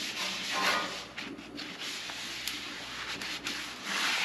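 Folded paper towel held in tongs being rubbed back and forth across the oiled steel top of a hot Blackstone griddle, a rough, uneven scrubbing over a steady hiss as the oil is spread to season the surface.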